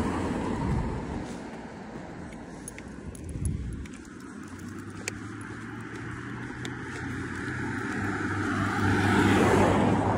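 Road traffic noise on a roadside pavement, a steady rumble that swells louder near the end as a vehicle approaches, with a few light clicks.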